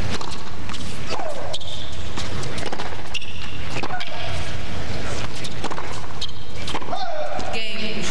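A tennis rally on a hard court heard over a TV broadcast: sharp strikes of racket on ball, with the players' short vocal grunts on their shots and a crowd murmur behind.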